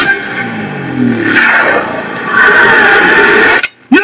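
Film trailer soundtrack: dense, loud dramatic score and sound design that cuts out abruptly near the end, followed by a sharp hit.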